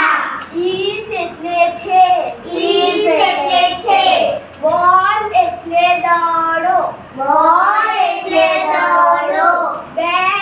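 Children chanting a lesson aloud in a sing-song rhythm, reciting line after line in regular phrases.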